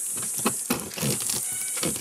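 A knife sawing through the hard crust of a camp-oven damper on an enamel plate, giving a few irregular scrapes and clicks. A steady high-pitched insect drone runs underneath.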